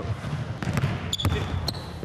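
Basketball court sounds: a ball bouncing with a few sharp knocks, two short high squeaks about a second in and near the end, typical of sneakers on a hardwood floor, over background voices.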